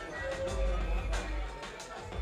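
Live band music: a deep, heavy bass under sharp drum hits, with a voice mixed in.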